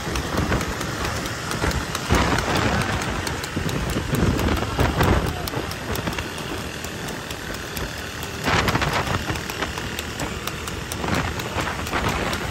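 Steady rushing road noise of motorcycles and a horse-drawn racing tanga moving at speed, with wind buffeting the microphone; the noise swells a few times.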